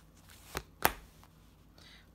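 Oracle cards being handled: a card is pulled from the deck and laid down, giving two short card snaps, a softer one just over half a second in and a sharper one just before the one-second mark.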